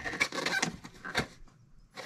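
Cardboard quilt-kit box and the packaging inside being handled: irregular rustling and scraping with a few light knocks, the sharpest about a second in, falling quiet near the end.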